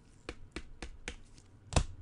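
A quick series of about five sharp clicks and taps from trading cards and a clear plastic card holder being handled and set down by gloved hands, the loudest click near the end.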